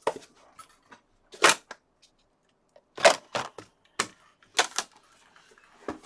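A handful of sharp clicks and taps at irregular intervals: one loud click about one and a half seconds in, then several more in a cluster between three and five seconds in.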